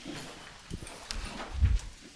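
A room of people getting up and moving around: scattered footsteps, chairs shifting and knocks, with a heavier low thump near the end.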